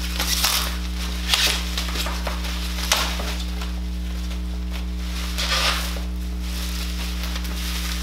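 Plastic packaging and bubble wrap crinkling and rustling in several short bursts as a parcel of comic books is pulled open, over a steady low electrical hum.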